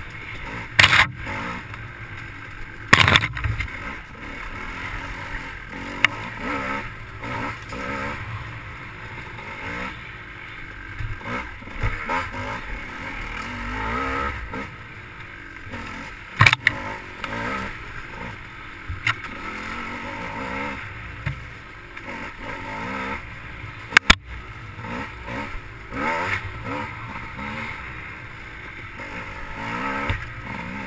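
GasGas dirt bike engine revving up and down as it rides a rough wooded trail. Several sharp knocks and clatters cut through it, the loudest about three seconds in.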